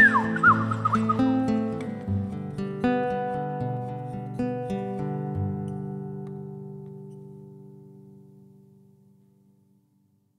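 Closing bars of a song on a nylon-string classical guitar and a Roland FP-4 digital piano. For about the first second a wordless voice glides up and down over them. The last chord then rings on and fades out just before the end.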